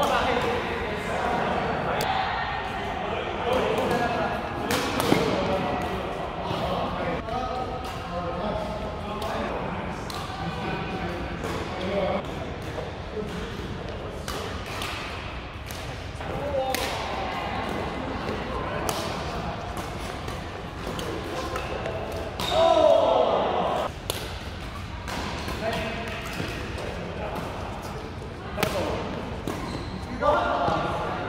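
Badminton rackets striking the shuttlecock in doubles rallies: many sharp hits scattered through the play, with players' voices echoing in a large sports hall. The voices are loudest about three-quarters of the way through.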